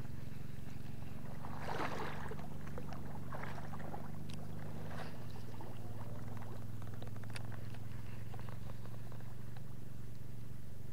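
A steady low motor hum that drops slightly in pitch about halfway through, with scattered rustling and clicks over the first six seconds or so.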